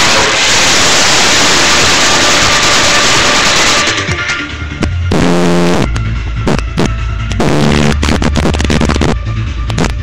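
Electronic music played at maximum volume through a Logitech Z-623 2.1 computer speaker system with subwoofer. For about four seconds a dense hiss-like wash fills the sound, then a heavy, rhythmic bass line comes in about five to six seconds in.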